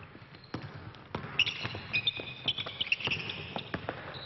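A basketball thumping on the court several times, with sneakers squeaking in short high squeals as the players cut and move, from about a second and a half in.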